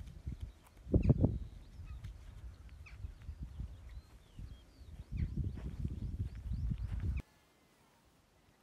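Wind buffeting a handheld microphone, with the thudding footfalls of a person running on grass, a louder gust about a second in, and faint high chirps. The sound cuts off abruptly near the end.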